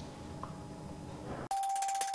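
Faint room ambience, then, about one and a half seconds in, a news channel's outro jingle cuts in suddenly with a held, bell-like chime tone.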